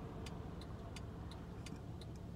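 A car's hazard-light flasher clicking steadily, about three clicks a second, over a low rumble inside the parked car's cabin.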